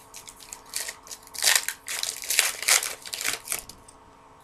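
Foil baseball card pack being torn open and its wrapper crinkled: a run of irregular crackling rips, loudest about a second and a half in and again near three seconds.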